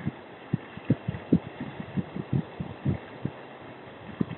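Irregular low thumps, two or three a second and uneven in strength, over a faint steady hiss.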